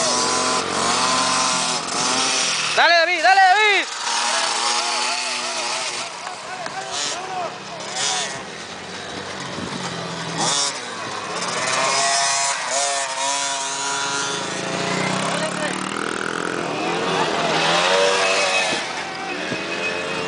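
Small dirt bike engines revving on the track, their pitch sweeping up and down again and again as the riders open and close the throttle through the turns. The loudest, highest run of revs comes about three seconds in.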